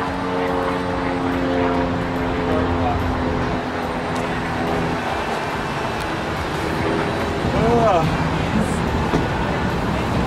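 Steady city street traffic noise, with a vehicle engine's steady hum through the first half that fades out about halfway through.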